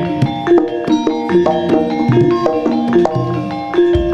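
Gamelan music for a jaranan dance: metal keyed and gong-chime instruments play a quick, continuous run of struck ringing notes, with sharp percussive strokes among them.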